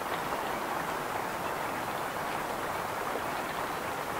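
Steady rain falling, an even hiss with no let-up.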